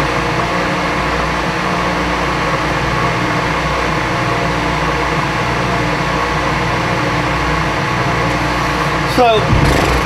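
Vertical milling machine running with a steady hum and fixed whine, while its table is cranked along by hand after the finishing pass over a welded steel tool block.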